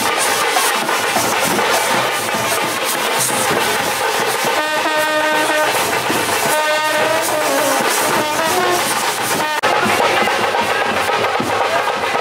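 Indian street brass band playing a processional tune on trumpets and large brass horns over drums, with long held brass notes around the middle. The sound drops out briefly near the end, then the music goes on.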